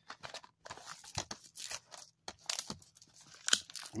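Plastic shrink wrap being torn and peeled off a Blu-ray case, in irregular crinkling rips, the sharpest about three and a half seconds in.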